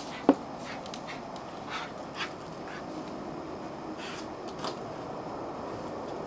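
A single short, sharp yelp from a dog, falling in pitch, about a third of a second in. It sits over steady background noise, with a few faint ticks later on.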